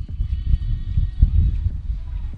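Wind buffeting an outdoor microphone: an irregular, gusting low rumble.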